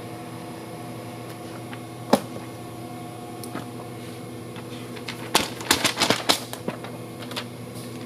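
Paper pages being ripped from a freshly bound book, a crackly tearing lasting about a second and a half past the middle, over the steady hum of the running bookbinding machines. The pages tear before the EVA-glued spine lets go, a sign of a strong binding. There is a single click about two seconds in.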